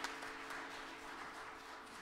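Light applause from a few people clapping, thinning out and fading. Underneath, the acoustic guitar's last chord rings on and dies away.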